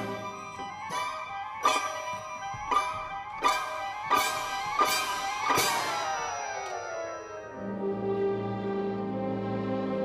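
Symphony orchestra playing a run of sharply accented chords, about one every 0.7 s, each ringing on, then settling about three-quarters of the way in into a long held chord.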